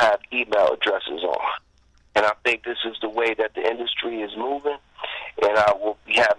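Speech only: a man talking over a telephone line, the voice thin and cut off above the middle range, with a short pause about two seconds in.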